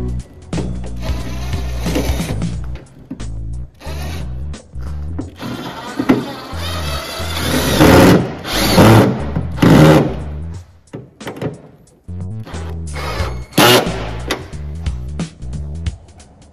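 Cordless drill-driver running in several short bursts, the loudest around the middle, over background music.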